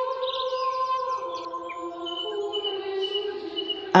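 Ambient music bed of held drone tones that settle onto a lower chord about a second in. A run of quick bird chirps sounds over it in the first second and a half.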